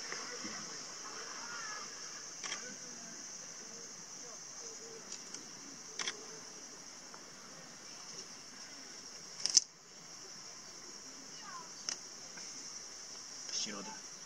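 Steady high-pitched buzz of summer cicadas, with faint distant voices and a few sharp knocks, the loudest about nine and a half seconds in.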